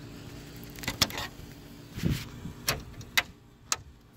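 A clear plastic sensor cover being pushed into a plastic truck grille: a handful of sharp plastic clicks and taps, spread over a few seconds, as it is pressed onto its slots and pins.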